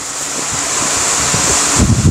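Silk saree rustling and swishing as it is unfolded and spread by hand. The swishing grows louder and ends in soft low thumps as the palms press the fabric flat.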